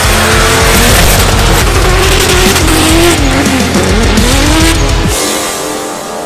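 Drift car sliding with its engine revving and tyres squealing, the pitch wavering up and down, over loud music with a heavy pulsing bass. The bass drops out about five seconds in.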